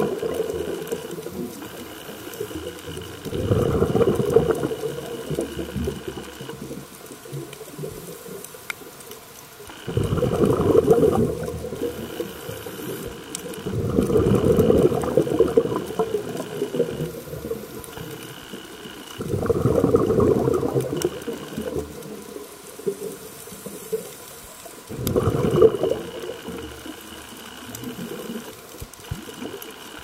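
Scuba diver breathing underwater through a regulator: bursts of exhaled bubbles about every five seconds, each lasting a second or two, with quieter inhalations between.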